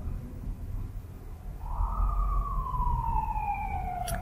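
A siren's wail: one long tone that glides slowly down in pitch, starting about two seconds in, over a low rumble.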